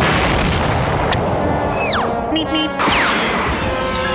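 Cartoon sound effects over orchestral score: a loud crash-boom right at the start that dies away over a second or so, then two quick falling whistles about two and three seconds in.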